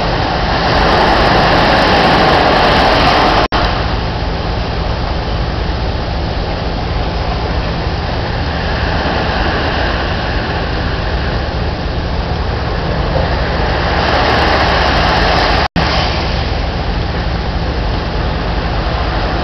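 Surf washing onto the beach, a loud steady rushing that swells louder for a few seconds near the start and again near the end. The sound cuts out for an instant twice.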